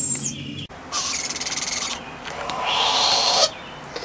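Young screech owls hissing defensively: two long raspy hisses, the first with a fast flutter running through it, after a brief high thin call at the start. The hissing is the sign of wild, non-imprinted owlets warning off a person.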